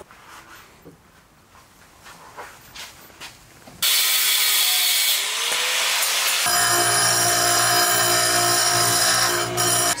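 Angle grinder with a cut-off disc cutting a stainless steel rod clamped in a vise. After a few seconds of faint handling clicks, the grinder starts suddenly and loudly about four seconds in with a hissing, gritty cut, then settles into a steady high whine that runs on until it stops just before the end.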